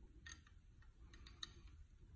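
Near silence with a few faint metallic clicks from a combination wrench on an adjuster lock nut in a Mack engine's valve train, as the nut is snugged down by hand.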